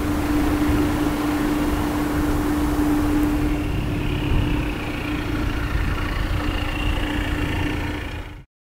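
Steady mechanical hum with a low rumble and one constant droning tone, like a motor or fan running outdoors; it cuts in and out abruptly.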